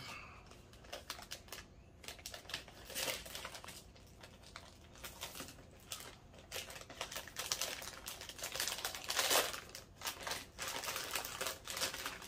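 Plastic packaging bag crinkling and rustling as it is handled in the hands, in uneven spurts, loudest about nine seconds in.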